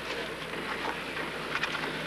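Steady background noise of a car interior on a film soundtrack, with a low steady hum coming in a little under halfway through.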